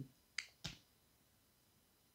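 Two short, sharp clicks about a quarter of a second apart, the second one fuller and lower.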